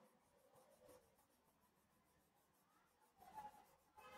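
Faint scratching of a coloured pencil on paper in quick, repeated back-and-forth shading strokes. There is a brief louder sound a little after three seconds in.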